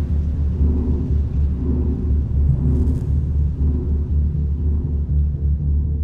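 Ambient background score with no narration: a deep, steady low drone with sustained tones above it.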